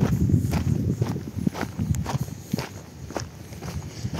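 Footsteps crunching on a dirt and gravel path, about two steps a second, from a person walking with a handheld camera.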